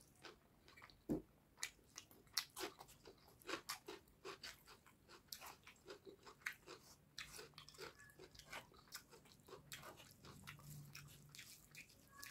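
Close-miked eating sounds from a man eating fish curry and rice by hand: wet chewing and lip smacks, with fingers squishing and mixing curry into the rice. There are many short, irregular clicks and smacks throughout.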